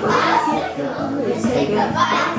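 A group of young children talking and calling out together while they dance.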